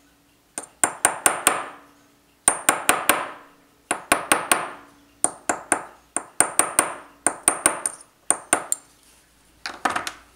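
Small hammer tapping a dovetailed brass patch home into a clock wheel on a steel staking block, riveting it in place. The taps are light and ringing, in quick runs of four to six at about six a second, with short pauses between runs.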